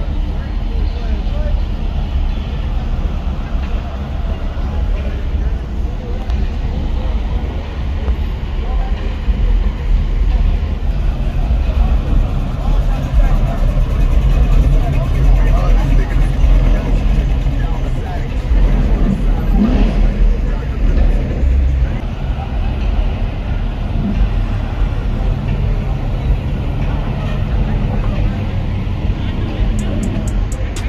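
Car engines running loudly, with a deep low rumble throughout and people talking over them.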